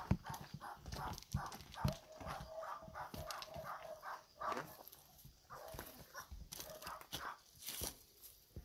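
An animal calling in quick repeated notes, about three or four a second, through the first half, then more scattered, with a few low thumps.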